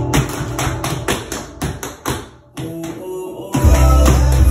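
Tap shoes tapping on a wooden floor over a recorded song with a steady beat. The music drops away briefly a little past halfway, then comes back with heavy bass near the end.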